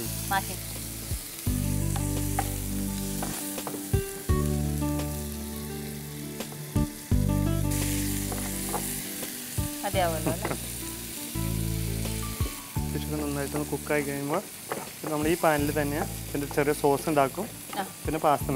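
Prawns and squid rings sizzling in oil in a frying pan while they are stirred with a wooden spatula.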